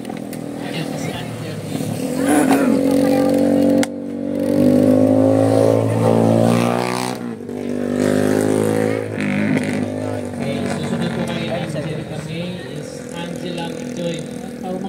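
A motor vehicle engine running close by, steady at first, cutting off sharply about four seconds in, then returning and rising in pitch as it revs around the middle, with voices underneath.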